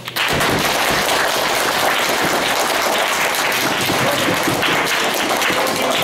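Loud applause from an audience of children, starting sharply a moment in and holding steady as a dense crackle of many hands clapping.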